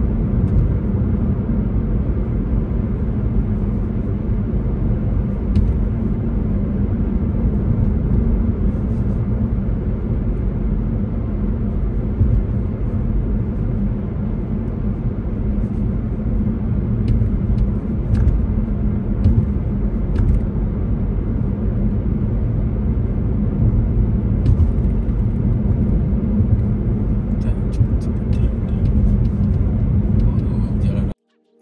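Steady low rumble of a car driving at highway speed on a snowy, slushy road, heard from inside the cabin. It is the mix of tyre and road noise with the engine, broken only by occasional faint ticks.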